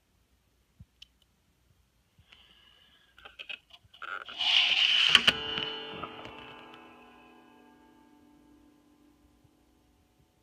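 Strings of a Taylor electric guitar brushed and handled by hand: a scrape and rustle over the strings, then the strings ringing together and slowly dying away over about four seconds.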